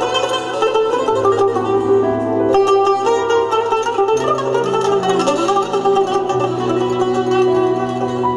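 Azerbaijani tar, a plectrum-plucked long-necked lute, playing a fast run of melodic notes. Underneath, a held low bass note changes pitch about three times.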